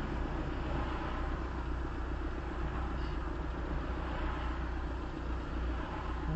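City traffic crossing an intersection, heard from inside a stationary car, over a steady low hum.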